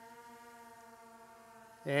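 Faint, steady hum of a Skydio 2 quadcopter's propellers in flight: one held tone with evenly spaced overtones.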